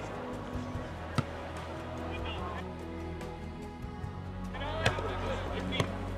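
Soccer ball kicked sharply about a second in and twice near the end, over a steady low hum, with brief distant shouts from players.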